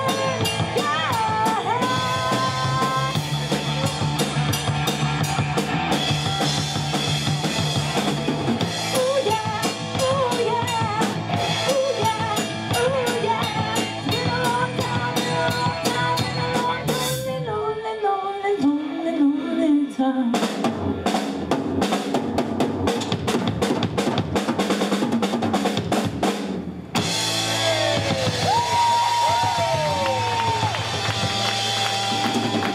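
Live rock band playing through a PA: electric guitar, bass guitar and drum kit, with a female lead vocal in the first half. Past the middle the singing stops and the drums take over with a busy, hard-hitting passage. Near the end the guitar holds long notes and bends.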